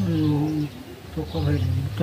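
Conversational speech: one long drawn-out syllable, then a few more words near the end, over a steady low hum.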